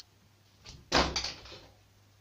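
Shower enclosure frame clattering as a cat lands on top of it: one loud bang about a second in, followed by a short rattle of the frame and panels.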